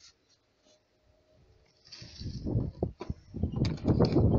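Dry sand being poured and spread into a plastic-lined basket, a rough, irregular rustling with the plastic lining crinkling. It starts about halfway in after a quiet start and grows louder toward the end.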